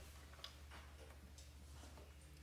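Near silence: room tone with a steady low hum and a few faint, scattered clicks.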